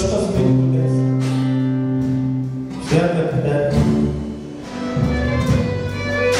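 A song performed with singing over guitar accompaniment, in held chords that change about three seconds in and again near five seconds.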